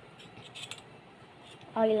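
A few faint short clicks and scrapes of hands handling soft homemade clay, a plastic cup and a plastic spoon, followed by a woman's voice near the end.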